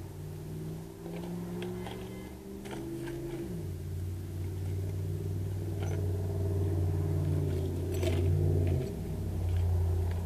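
Gas chainsaw engine running steadily, its pitch dropping about three and a half seconds in and dipping briefly near the end as the load changes, with scattered small clicks.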